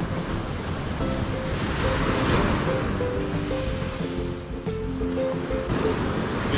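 Background music, a melody of held notes, over the steady wash of ocean surf on the beach. The surf swells about two seconds in.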